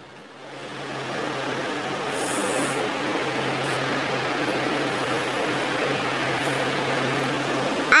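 Hand-held hair dryer running: a steady rush of blown air over a low motor hum. It builds up over about the first second and stops just before the end.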